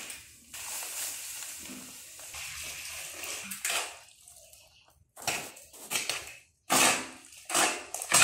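Dry tile mortar poured from its sack into a plastic mortar tub as a steady hiss. Then a steel trowel mixes the wet mortar in short scraping strokes, about two a second.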